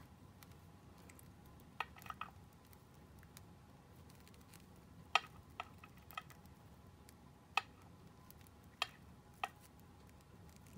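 Faint handling sounds: a handful of small, sharp clicks and light rustles as fingers work a pin and crochet piece through a sheer organza gift bag.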